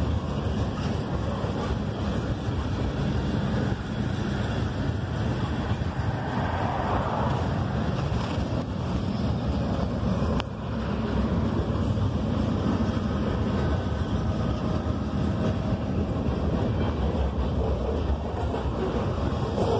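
Steady low road rumble and wind noise from a car driving at speed.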